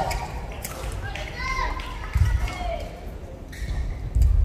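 Badminton rally in a large hall: rackets strike the shuttlecock several times with sharp cracks, while court shoes squeak on the floor in short arching squeals over the thud of footfalls.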